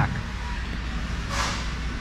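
Steady low background hum with no clear source, and a short soft hiss about one and a half seconds in.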